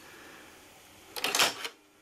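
A plastic filmstrip take-up drum being fitted onto a projector: a short burst of clicks and rattles a little past halfway, then quiet.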